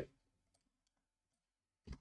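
Near silence with a few faint clicks, and one short, louder click near the end: a computer mouse being clicked.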